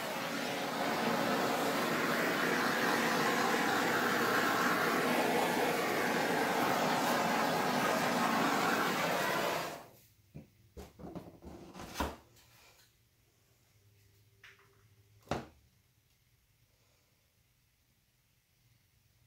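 Handheld flame torch run over wet acrylic paint, giving a steady hiss for about ten seconds before it is shut off abruptly. A few light clicks and knocks follow.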